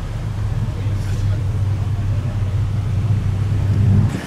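A car engine running steadily at idle, a low hum that grows slightly louder toward the end.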